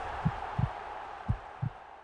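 Heartbeat sound effect: low double thumps, one pair about every second, over a fading hiss, growing quieter.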